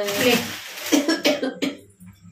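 A woman coughs: one harsh, rasping burst at the start, followed by a few shorter voiced sounds.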